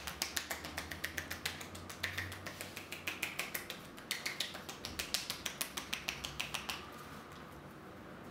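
Rapid percussion massage: a barber's hands striking the neck and shoulders in quick, crisp slaps, about six a second, stopping about seven seconds in.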